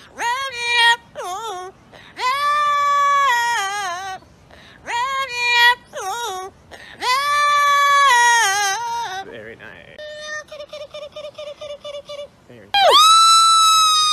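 An Amazon parrot singing in a human-like voice: a string of long, wavering notes with vibrato and short breaks between them. About ten seconds in, a quick run of rapid short notes comes, and then a long high held note near the end.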